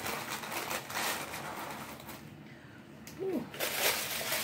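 Paper food wrapper crinkling and rustling in the hands, loudest just at the start and again near the end, with a short "mm" about three seconds in.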